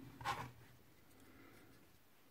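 Brief scrape of hard clear plastic being handled, about a quarter of a second in, as the transparent 2.5-inch hard drive enclosure and its lid are picked up; then faint room tone.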